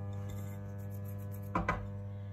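A steady low hum throughout, with a short, louder sound about a second and a half in.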